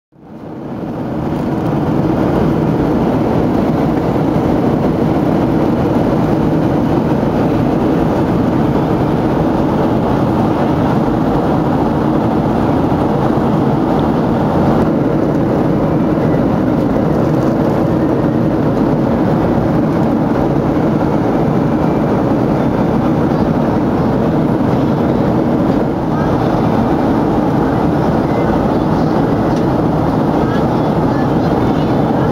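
Steady jet engine and airflow noise heard inside the cabin of a Boeing 737 in flight, fading in over the first second or two.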